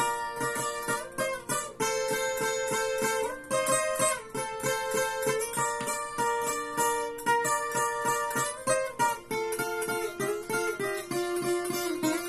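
Viola caipira, the ten-string Brazilian folk guitar, played solo in an instrumental sertanejo passage: quick, evenly rhythmic picked and strummed chords with several changes of chord.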